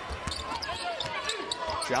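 A basketball being dribbled on a hardwood court, a series of short thuds, under the murmur of an arena crowd.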